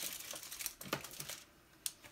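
Plastic case and packs of nail foils being handled: a run of small clicks for about a second and a half, then one sharp click near the end.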